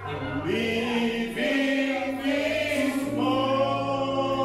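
A man singing a gospel song into a microphone, with other voices singing along. The notes are long and held, over a steady low bass note.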